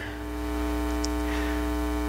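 Steady electrical mains hum, a low drone with a buzzy stack of overtones, rising a little in the first half second and then holding level.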